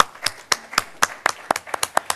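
A few people clapping: sharp, separate hand claps, about four a second at first, then quicker and less even.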